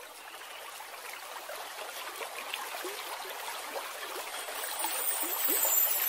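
Flowing stream water with small gurgles, growing steadily louder as it fades in.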